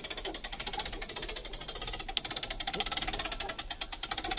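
Pop-up camper roof-lift crank of a 2013 Jayco Sport 8 being turned by hand, its winch mechanism giving a rapid, even clicking as the roof is raised.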